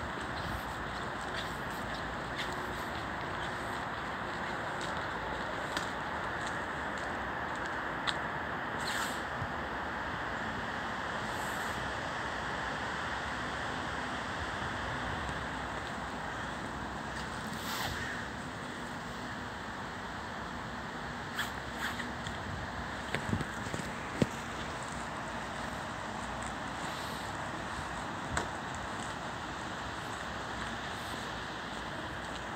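Steady outdoor rushing noise with no clear single source, with a few light clicks and taps about two-thirds of the way through.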